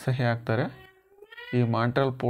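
A man speaking in a lecture. In a pause about halfway through there is a brief, faint, high-pitched call that falls and then rises in pitch.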